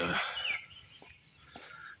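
Birds chirping in the background of an open-air scene, a few short chirps in the first half-second, after which it goes quieter.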